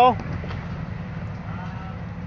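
Rock-crawling buggy's engine idling low and steady. A shouted word ends right at the start.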